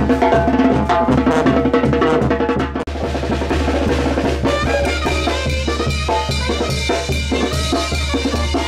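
Street brass band with tuba, bass drum and snare drum playing a lively tune, with a brief break about three seconds in.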